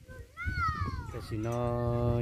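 A single high-pitched animal call, falling in pitch over about a second.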